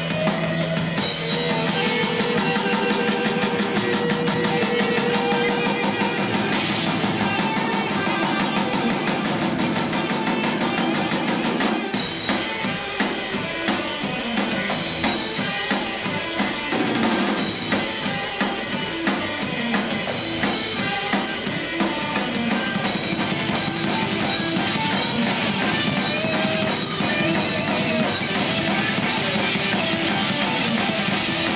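A stoner/doom metal band playing live, with electric guitars, bass and a drum kit.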